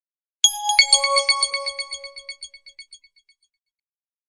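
Channel logo sting: a short electronic chime jingle. A rapid run of bright, bell-like notes starts sharply about half a second in and dies away over roughly three seconds.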